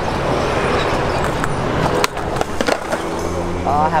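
Skateboard wheels rolling over a concrete skatepark surface with a steady, gritty rumble. About two seconds in there is a sharp clack, and the rolling is quieter after it.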